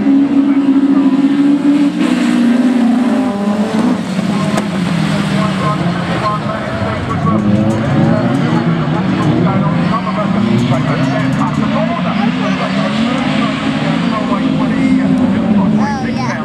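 Several autograss racing car engines: an engine note held steady for about the first two seconds, then overlapping engine notes rising and falling as the cars race.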